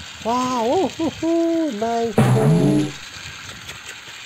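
Train-whistle hooting: three pitched calls that rise and fall, followed by a short hissing burst with a falling tone, like a steam release.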